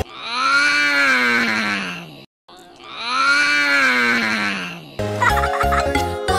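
A long, drawn-out vocal groan sound effect, played twice in a row with a brief silent break between, its pitch rising a little and then sliding down. The children's song music comes back near the end.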